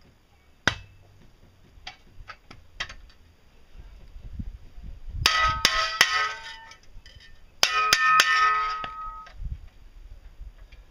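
Stainless steel shovel blade clanging as it is knocked onto its metal handle: a single knock about a second in, then two clusters of about three sharp metal strikes, each left ringing with several steady tones.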